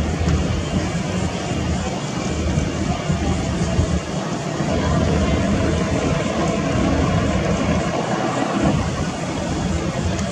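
Airboat engine and propeller running at low speed, a steady low rumble that rises a little about halfway through, with wind on the microphone and faint voices.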